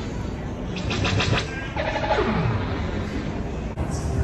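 Electronic sound effect from an animated mini-golf prop: a buzzing rattle about a second in, then a pitched tone that slides steeply downward, the same sequence repeating about every three seconds. It breaks off abruptly just before the end.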